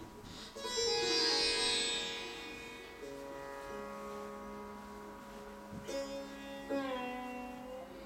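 Sitar being plucked. A bright note about a second in slides down in pitch as it rings, and two more plucked notes near the end also bend downward, over steady ringing drone tones.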